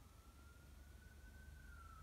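Faint emergency-vehicle siren far off, one slow wail rising gradually in pitch and dropping near the end.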